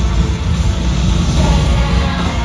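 Loud concert music playing over an arena PA during a dance interlude, with a heavy bass beat.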